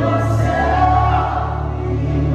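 Live gospel music: a choir singing over held chords and a steady low bass.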